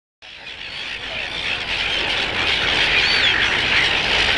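A large flock of silver gulls calling together in a dense, continuous squawking chorus, growing louder over the first second or so.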